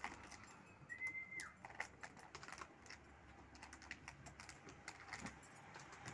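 Light plastic clicking and tapping as small plastic cups are handled and fitted into the holes of a plastic bucket lid, irregular and faint. About a second in, a short whistle holds one pitch for half a second, then drops.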